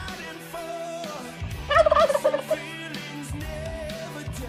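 Rock music soundtrack, with a loud warbling, wavering passage a little under two seconds in.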